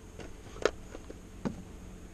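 Two short knocks as things are handled at a van's open side door, the first louder, about a second apart, over a low steady background rumble.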